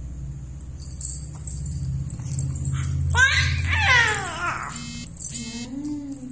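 A baby vocalizing: a loud, high squeal that slides down in pitch about three seconds in, then a softer coo near the end.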